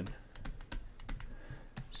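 A rapid, irregular run of light ticks and taps from a stylus writing digits on a digital tablet.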